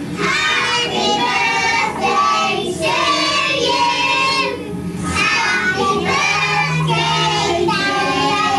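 Children singing a song, several young voices together, without a break.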